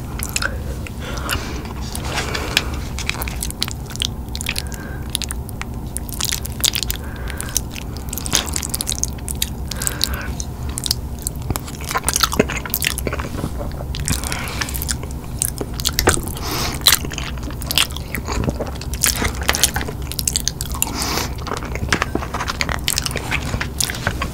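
Close-miked eating: steady chewing and crunching, a dense run of small crunches and mouth clicks, with a forkful of macaroni and cheese taken about halfway through.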